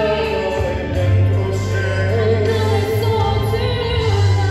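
A sung song with instrumental accompaniment: a voice holding wavering notes over a steady held bass.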